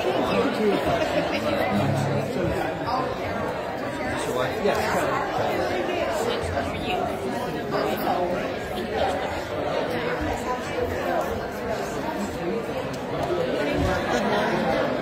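Chatter of many people talking at once in a church sanctuary, the congregation greeting one another.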